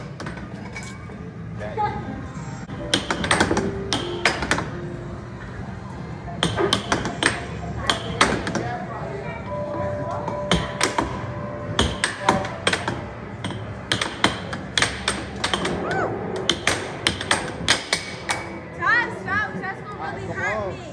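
Air hockey puck clacking off the mallets and table rails in quick rallies of sharp knocks, over arcade game music and background chatter.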